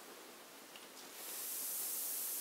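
Bath bomb fizzing as it dissolves in bath water: a soft, high hiss that starts about a second in, swells, then holds steady, fast and foamy.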